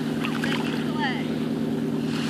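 A steady low motor drone with several pitched tones, over the hiss of a small wave washing up the wet sand. Faint distant voices come through in the first second.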